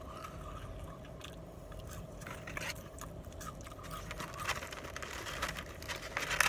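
Someone chewing curly fries close to the microphone: quiet, irregular soft crunches and small clicks, with a faint scraping of the paper fry carton. The crackles come closer together toward the end.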